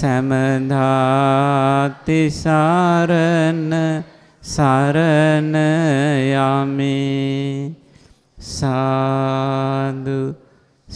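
A Buddhist monk chanting solo in a slow, held melody, in four phrases with short breaths between them.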